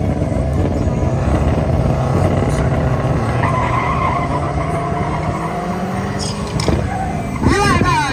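Drag-racing car engines revving hard at the start line, then a car launching down the strip, with a sharp squeal near the end.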